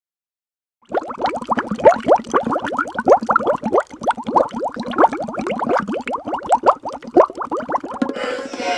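Underwater bubbling sound effect: a rapid stream of bubbles plopping and gurgling, starting about a second in.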